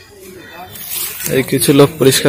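A man's voice speaking, starting a little past the middle, just after a short hiss.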